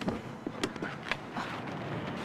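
A few light, sharp knocks and clicks over a faint background hiss, spread unevenly through the first second or so.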